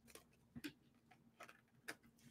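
Near silence with four or so faint, short clicks of tarot cards being handled and set down on a table.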